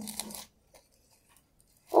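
Faint crunch and rustle of coarse sand and begonia leaves as a leaf cutting is pushed into a bowl of sand by hand, lasting about half a second, then near silence with a couple of tiny ticks.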